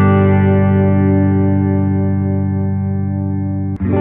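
An electric guitar G chord strummed once on the neck pickup of a PRS through a clean Fender amp, ringing and slowly fading. Near the end a second G chord is struck on the other PRS guitar, for comparison.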